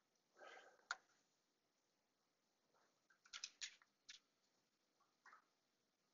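Near silence with room tone, broken by a few faint short clicks and rustles: one just under a second in, a quick cluster about three and a half seconds in, and one more near the end.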